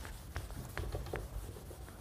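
Marker pen writing on a whiteboard: a run of short, faint pen strokes and taps of the tip.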